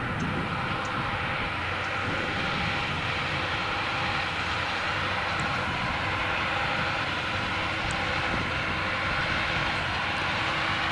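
Fendt 936 tractor's six-cylinder diesel under steady load, pulling a CLAAS Quadrant 5300 large square baler that is picking up and pressing straw; a continuous drone of engine and baler machinery.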